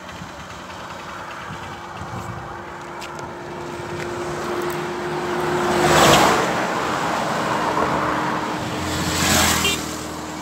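Road vehicles passing close by on a highway. One swells to a loud peak about six seconds in and another passes near the end, over a steady low engine hum.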